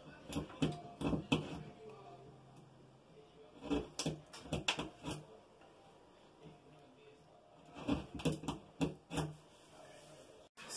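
Utility knife blade scratching and scraping as it scores the wall board along a pencil line, in three bouts of quick short strokes: at the start, in the middle and near the end. The blade isn't that sharp.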